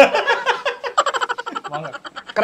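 A man laughing in quick, rhythmic bursts.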